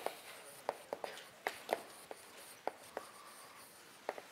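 Chalk writing on a blackboard: a string of irregular, sharp taps and short scrapes as the chalk strikes and drags across the board.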